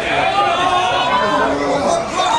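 People talking over each other in a hall: overlapping voices and chatter, with no other distinct sound.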